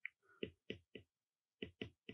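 Stylus tip tapping on a tablet's glass screen while handwriting: about six faint, short clicks, four in the first second, then a pause and two more near the end.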